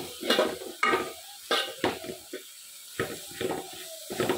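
Metal spoon stirring beef, onions and spice powders in a pan, scraping and knocking against the pan at irregular moments, with a light sizzle underneath.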